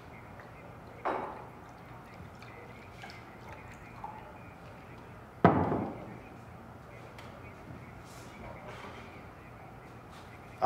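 Liquor poured from a glass bottle into a small glass, then a sharp knock about halfway through as the bottle is set down on the wooden table.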